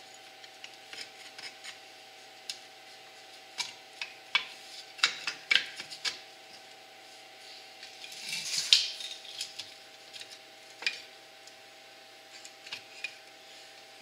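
Metal brake parts clicking and scraping as a drum brake's spreader bar and brake shoe are handled and fitted against the backing plate: scattered light clicks, with a louder scraping rub about eight to nine seconds in.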